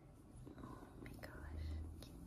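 A one-month-old tabby kitten purring faintly close to the microphone, with soft rustling of a hand stroking its fur, a brief higher sound about a second in, and a low muffled bump near the end.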